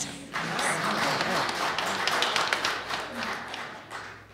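Congregation applauding: many hands clapping together, starting a moment in and dying away near the end.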